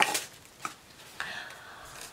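Quiet handling sounds of a carved wooden box: a light knock right at the start, another short tick a little past half a second in, then a brief faint rustle.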